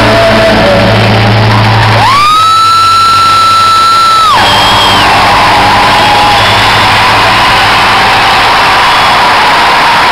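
Live band music and crowd noise recorded loudly from the audience. About two seconds in, the bass drops out and a loud high note, rising at its start, is held for about two and a half seconds while the crowd shouts.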